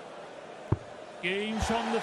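A steel-tip dart striking the dartboard: one short, sharp thud. It is the finishing dart in double 16, checking out 104 to win the leg.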